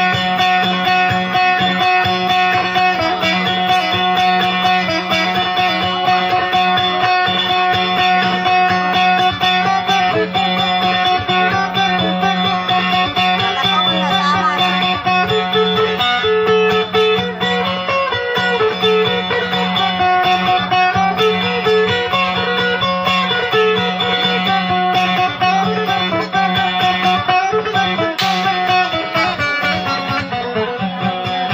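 Electric guitar playing an instrumental dayunday passage. A repeating plucked melody runs over a steady low drone note.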